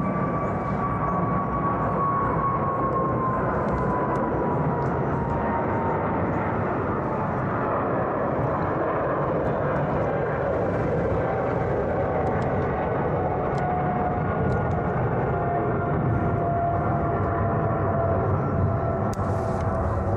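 Aircraft passing overhead: a steady rumble with an engine whine that falls slowly in pitch over the first several seconds, and a second, lower whine later on.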